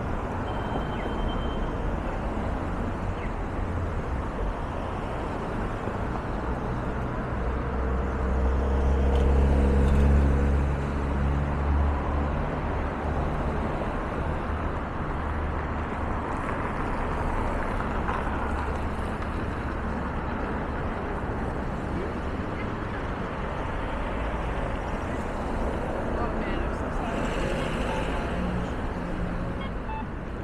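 Busy downtown street traffic, with a vehicle's engine passing close by, loudest about ten seconds in.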